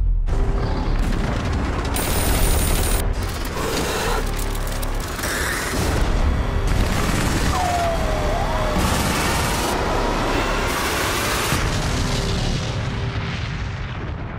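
Dramatic trailer music with heavy booming hits and layered action sound effects, changing abruptly every second or two as the montage cuts.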